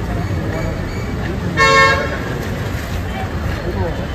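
A vehicle horn gives one short, steady toot about a second and a half in, over the low rumble of street traffic and crowd chatter.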